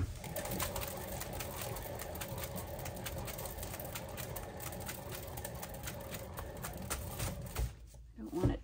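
A painting turntable spinning a canvas board: a steady rumbling whirr with rapid ticking. It starts suddenly and stops near the end.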